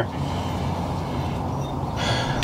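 Steady low background rumble with no distinct knocks or clicks.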